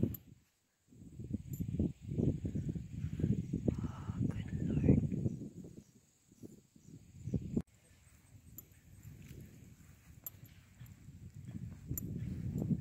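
Wind rumbling on the microphone in irregular gusts, strongest in the first half, then dropping to a fainter steady rumble.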